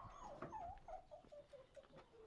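A dog whimpering faintly: a string of short whines that step down in pitch.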